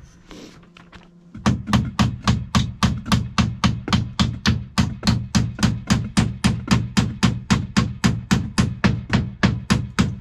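A steady run of sharp percussive strikes, about four a second and very even, starting about a second and a half in.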